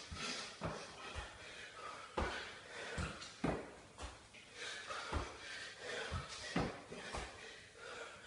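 A man doing burpees on a tiled floor: repeated dull thuds of hands and feet landing, irregularly spaced, with hard breathing between them.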